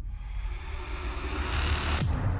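Logo-intro sound effect: a low rumble under a hiss that swells into a loud whooshing burst about one and a half seconds in, as dust sweeps across the picture.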